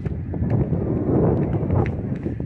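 Wind buffeting a handheld camera's microphone with a dense low rumble, along with a few footsteps on a concrete path.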